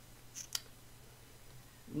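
Low room tone with one sharp short click about half a second in, just after a fainter tick.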